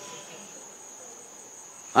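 Insects chirring in a steady, high-pitched trill, quiet in the pause between speech.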